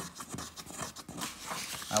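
Handling noise: irregular soft clicks and rustling as the plastic ECU wiring-harness connector is held and moved in the hand.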